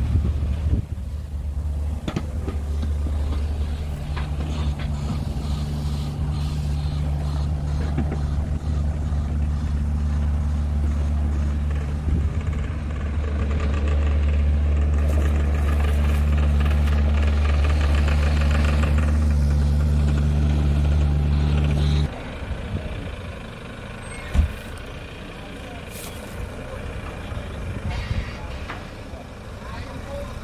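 Heavy diesel engine idling with a steady low drone, cutting off suddenly about 22 seconds in. Afterwards it is quieter, with a single sharp knock.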